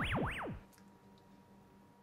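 Electronic sound effect: a synthesizer tone swooping rapidly up and down, the swoops slowing as it goes, fading out about half a second in, then faint room tone with a low steady hum.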